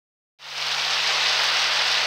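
A steady rain-like hiss fades in about half a second in and then holds level, with a faint low hum beneath it: the opening noise effect of a karaoke backing track.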